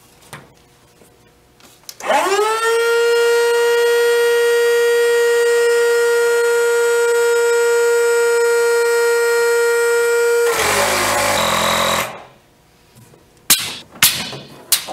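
Sea Eagle electric inflation pump spinning up about two seconds in to a loud, steady high whine, running for about eight seconds, then turning rougher and noisier before it cuts off about twelve seconds in. A few sharp clicks near the end.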